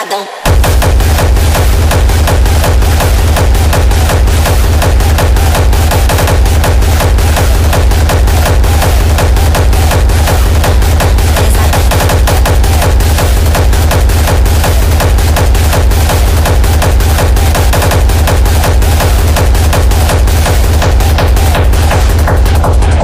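Hard techno playing loud: after a short break the heavy kick drum and bass come back in about half a second in, driving a dense, fast rhythm that carries on without a pause.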